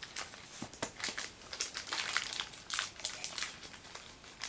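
Plastic packaging crinkling in irregular, quick crackles as the Beyblade layer is unwrapped.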